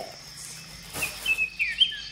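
Bird chirping: a run of short, high chirps with quick up-and-down glides in pitch, starting about halfway in.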